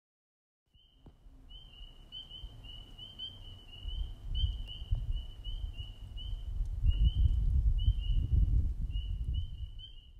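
A bird calling in a long run of short high notes, about three a second, over a low rumble that grows louder from about four seconds in. The sound starts abruptly about a second in.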